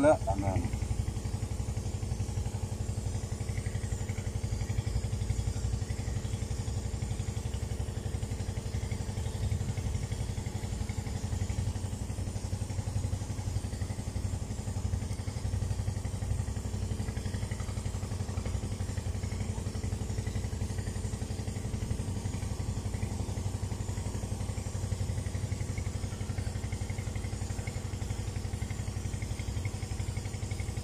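A motor engine running steadily at an even idle, a continuous low hum with a faint steady whine above it.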